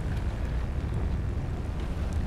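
Wind buffeting the action-camera microphone: a low, uneven rumble that never lets up.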